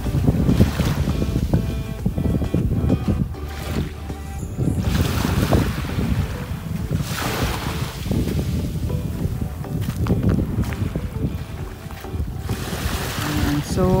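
Small waves washing in over a shelly, gravelly beach, surging and falling back every few seconds, with wind buffeting the microphone.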